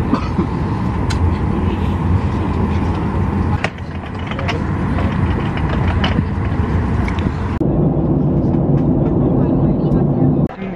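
Airliner cabin noise in flight: a loud, steady drone of engine and airflow. About three-quarters of the way through it changes to a narrower, lower hum.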